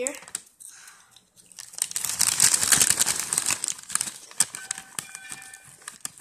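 Loud crinkling and rustling close to the microphone, heaviest from about two to three seconds in, then dying down.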